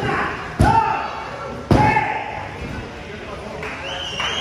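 A referee's open hand slaps the wrestling ring canvas three times, about a second apart, with shouted voices on each slap. This is a pinfall three-count ending the match.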